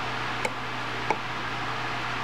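Two short clicks, about half a second in and again about a second in, of a finger pressing the front-panel push buttons on an ASI DBX2 digital barometer, over a steady low hum.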